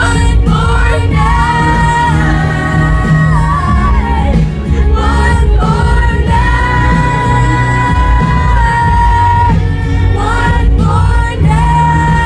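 Live pop music: a woman singing into a microphone over a loud amplified backing with heavy bass, holding one long note for about three seconds past the middle.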